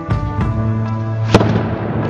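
Background music with a steady beat, cut through about a second and a half in by one sharp crack of a tennis racket striking the ball on a serve.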